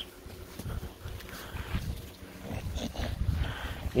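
Several American Bully dogs breathing and moving about close to the microphone, irregular and fairly faint, over a low rumble.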